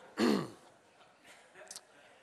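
A man clearing his throat once, briefly, about a quarter second in.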